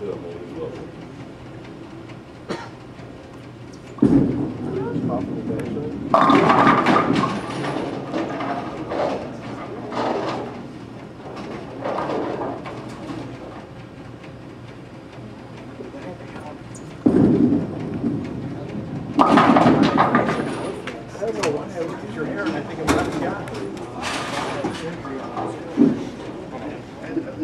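Bowling balls rolling down wooden lanes and crashing into the pins, twice. A sudden rumble starts about four seconds in and a loud pin crash follows two seconds later, then the same comes again from about seventeen seconds, with the crash near twenty seconds.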